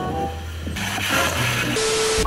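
Background music gives way about a second in to the hiss of TV static, an added glitch sound effect. Near the end a steady test-pattern beep sounds over the static.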